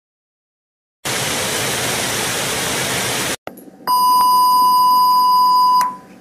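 A sudden burst of TV static hiss lasting about two seconds and cutting off sharply, followed a moment later by a steady test-card bleep, a single 1 kHz tone held for about two seconds: the 'technical difficulties' colour-bars signal.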